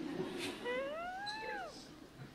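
A single high-pitched call, about a second long, that rises and then falls in pitch, after a brief low murmur.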